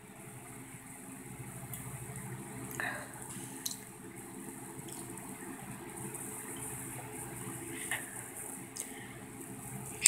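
Someone drinking soda from a bottle, quiet liquid sounds over a steady low electrical hum, with a few faint clicks.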